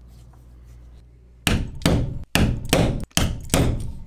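Quick hammer blows, about seven in a steady rhythm of roughly two and a half a second, starting about a second and a half in: setting double-cap rivets in leather strapping.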